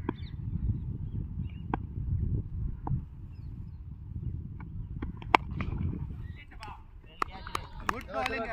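Low, fluctuating rumble of wind on the microphone at an open-air cricket ground, with scattered sharp clicks and knocks, the sharpest about five seconds in, and faint distant voices.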